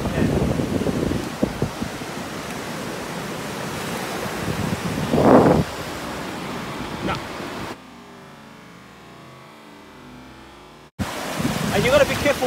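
Surf washing up over wet sand at the water's edge, a steady rushing noise with a louder surge about five seconds in. Near the end it drops suddenly to a much quieter, muffled wash for about three seconds before cutting off.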